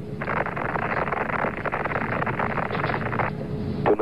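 Steady rushing static on the air-to-ground radio channel during the Saturn V's first-stage flight. It switches on abruptly and thins out about three seconds in.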